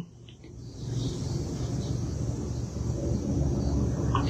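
A low, steady rumbling noise that fades in during the first second and then holds.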